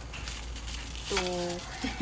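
Udon noodles going into a wok of boiling broth: the broth bubbling, with crinkling from the noodle packet.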